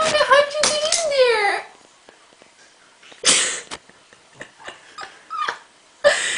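Domestic cat trapped in a hoodie sleeve meowing: one long drawn-out meow whose pitch slides down at its end, followed about three seconds in by a short breathy noise and a few faint ticks.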